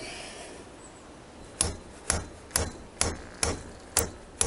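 A hammer tapping a steel chisel set in a cut groove on a seized, corroded screw in a bank of Kawasaki ZX-6R carburettors, to shock it loose. There are about six sharp metallic taps, roughly two a second, starting about a second and a half in.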